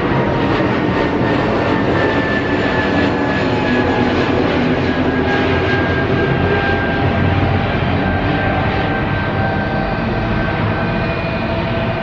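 Airliner climbing out overhead just after takeoff, its jet engines loud and steady, with whining tones that slowly fall in pitch as it passes.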